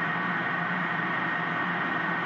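Steady, even machine noise with a constant high whine over a low hum, unchanging throughout.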